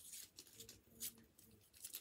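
Faint crinkling of a sweet wrapper being picked open by hand: a few soft, short crackles about a second apart, otherwise near silence.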